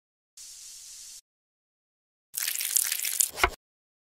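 Two edited-in sound effects with dead silence between them: a short, even high hiss, then about a second in the second half a louder crackling noise that ends in a low thump.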